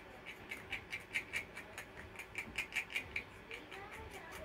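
A wooden stir stick scraping round a small plastic cup while it mixes epoxy resin with white pigment paste: quick, even scraping strokes, about four or five a second.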